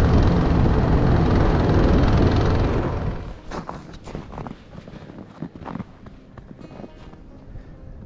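Small petrol engine of a motorised snow tow running steadily as it pulls a loaded sled. It drops away about three seconds in, leaving quieter scattered crunches and knocks.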